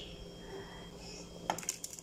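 A quick run of several light clicks and clinks about one and a half seconds in, from peeled hard-boiled eggs knocking in a clay bowl beside the pot; before that only a faint steady hum.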